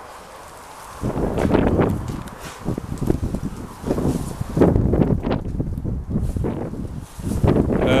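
Wind buffeting a handheld camera's microphone, with rustling and handling bumps as the camera is swung around; it starts about a second in and comes in uneven gusts.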